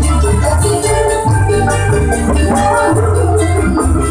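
Live dangdut koplo band playing loudly: a fast, steady drum and percussion beat over bass and a melody line, with no singing.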